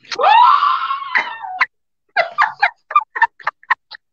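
A person's high-pitched squeal of laughter rising in pitch and lasting about a second and a half, followed by a run of quick, short bursts of laughter.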